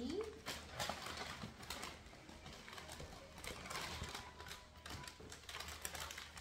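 Wrapping paper crinkling and rustling as a present is unwrapped: a steady run of irregular crackles with louder tearing moments.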